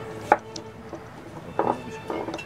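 Kitchen knife chopping through udo stalks onto a cutting board: one sharp chop about a third of a second in, then a quick cluster of cuts near the end.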